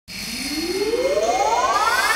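Intro of an electronic dance track played from vinyl: a synth sweep rising steadily in pitch over a hiss-like bed, building up before the beat comes in.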